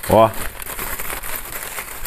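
Aluminium foil and paper wrapping crinkling and crackling as it is pulled open around a parcel of smoked chicken wing pieces.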